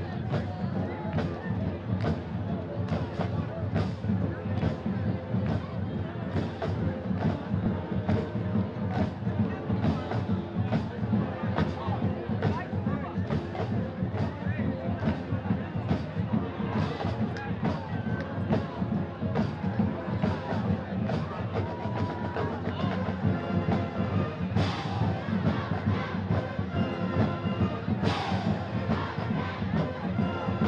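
High school marching band playing: brass horns and sousaphones over drums keeping a steady beat, with two louder crashes in the last few seconds. Crowd noise runs underneath.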